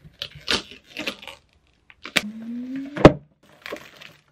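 Scissors snipping packaging on a cardboard box of marker pens, with short rustles. A sharp click about two seconds in starts a brief squeak that rises slowly in pitch and ends in a loud knock.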